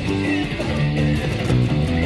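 Fast punk rock band music: a picked electric bass line under electric guitars and drums.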